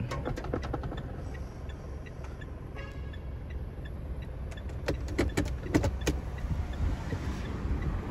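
Cabin sound of a 2012 Mitsubishi Strada's 2.5 L DI-D four-cylinder turbodiesel idling steadily in the cabin, with sharp clicks from the automatic transmission's shift lever being moved through its gate, several in the first second and more about five to six seconds in.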